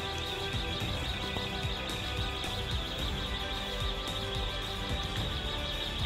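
Background music of steady held tones at an even level.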